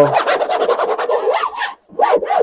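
Fingers scratching hard and fast across the moulded hard shell of a laptop backpack, a rapid run of scraping strokes that stops near the end. It is a test of the shell's scratch resistance.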